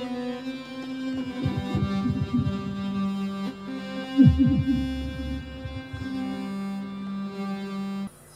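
Native Instruments Pro-53 software synthesizer, an emulation of the Prophet-5, played from a MIDI keyboard: steady held synth tones, with quick swooping sweeps about one and a half seconds in and a louder burst of them about four seconds in.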